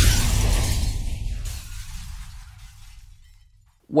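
Intro logo sound effect: a shattering crash with a deep low boom, fading away steadily over about three and a half seconds.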